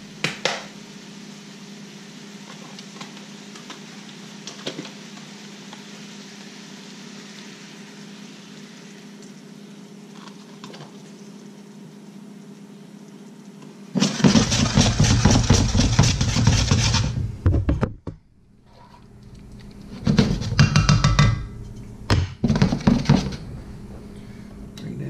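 A skillet of cream sauce simmering with a faint steady hiss. In the second half come a few loud bursts of stirring and utensil clatter in the pan as the heavy cream is worked into the sauce.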